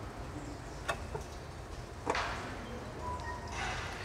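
Faint clicks and knocks from a Toyota Hilux's automatic transmission oil pan as it is taken down off its bolts. There is a short rushing noise about two seconds in, with residual oil running off the pan.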